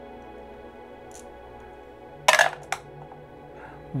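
Two dice rolled into a dice tray: a short clattering rattle about two seconds in, followed by a smaller click as they settle. Soft background music runs underneath.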